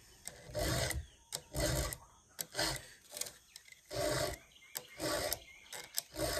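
Round rat-tail file pushed through the cutters of a chainsaw chain, sharpening it by hand. It makes a dry rasp on each forward stroke, about five strokes roughly a second apart, with a short quiet gap between them as the file is lifted to push one way only.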